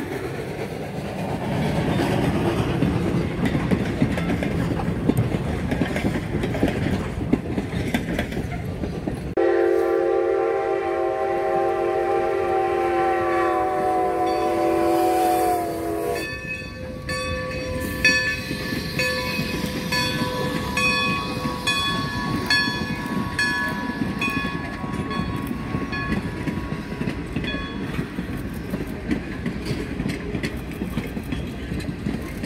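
Steam-hauled passenger train rolling past, a steady rumble and clatter of wheels on rail. About nine seconds in, a steam locomotive whistle blows one long blast of about seven seconds; after it the rumble of the passing coaches returns with short high-pitched squeals.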